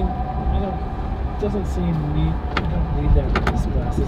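Steady low road and drivetrain rumble inside the cabin of a classic Volkswagen bus on the move, with a few sharp rattling clicks about two and a half and three and a half seconds in.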